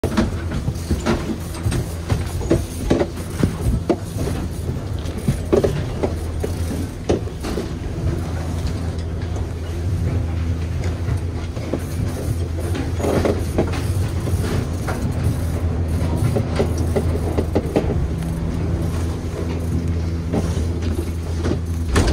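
Detachable gondola cabins rolling through the lift terminal: a steady low machine hum with irregular clacks and knocks as the cabins move along the station's rails and rollers.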